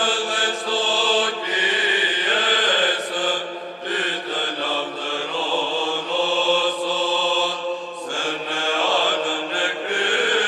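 Byzantine choir chanting: a sung melody moving over a held low drone note, the ison, which shifts to a new pitch about eight seconds in.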